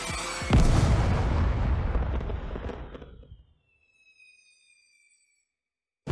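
Intro sound effect of a heavy cinematic boom: a big impact about half a second in, whose deep rumble fades away over about three seconds. A faint, high, slowly falling whistle follows.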